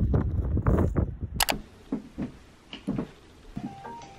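Loud outdoor rustling and bumping noise that cuts off with a sharp click about a second and a half in. A few soft knocks of someone moving about a quiet room follow, and piano music starts near the end.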